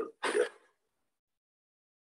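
A man clears his throat once, briefly, then the sound drops to dead silence for over a second.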